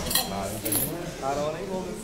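Two short, bright clinks, like cutlery or dishes knocking, over background voices.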